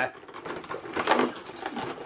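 Soft rustling and light tapping from a cardboard advent calendar box being handled.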